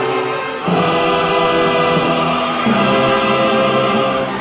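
Opera chorus with orchestra, sung and played in loud, sustained chords. The harmony shifts to a new chord about a second in and again near three seconds.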